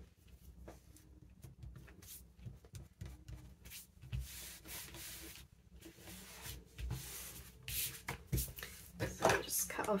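Hands rubbing and smoothing a freshly glued paper image flat onto a paper envelope, in soft swishing strokes with a few dull thumps on the table.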